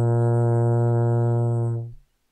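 Trombone holding a long, steady low note at the end of a method-book exercise, fading out and stopping just before the end.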